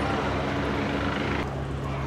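Steady low mechanical drone with a wash of noise over it. The sound changes abruptly about one and a half seconds in, at a cut in the footage.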